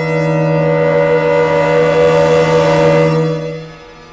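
Symphony orchestra holding a loud sustained chord over a strong low note, swelling with a bright noisy wash on top. It breaks off about three and a half seconds in, leaving a quieter held sound.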